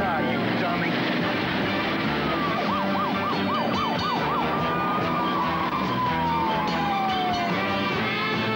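Police siren over car noise: a rapid up-and-down yelp of about four cycles a second for some two seconds, then a single long wail that falls steadily in pitch over nearly three seconds.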